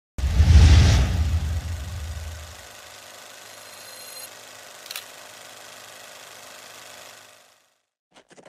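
Intro sound effects: a deep boom that dies away over about two seconds, then a steady hiss with a brief high ringing tone about four seconds in and a sharp click near five seconds, fading out before the end.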